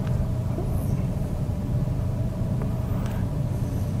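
Steady low room hum with a faint, constant higher tone above it, and no distinct events.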